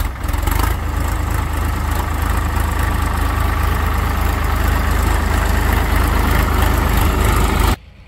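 Diesel engine of a Sonalika DI-42 RX tractor running steadily while it pulls a potato digger through the soil: a constant low rumble with a wash of noise above it. It cuts off abruptly near the end.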